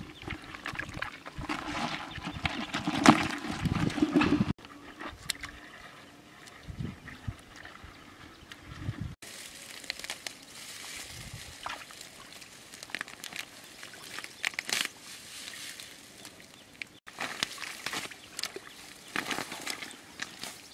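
Hands squelching and scooping in wet mud, then splashing and sloshing in shallow muddy water, in irregular bursts broken by a few abrupt cuts.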